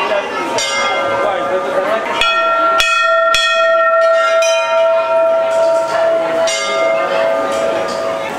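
Hanging temple bells being rung: several strikes, with a cluster of three close together in the middle, each leaving a long ringing tone that carries on for seconds. Crowd voices murmur underneath.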